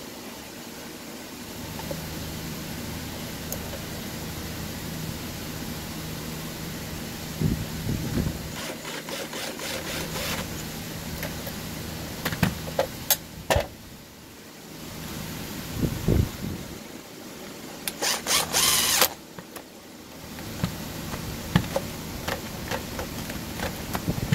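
Hitachi NV83A2 coil framing nailer being reassembled: metal parts knocking and clicking, with a cordless drill/driver running in short bursts to drive in the housing bolts. The loudest burst comes about three-quarters of the way through, over a steady low hum.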